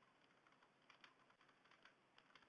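Faint keystrokes on a computer keyboard, typed in a quick run of irregular taps that is clearest from about a second in.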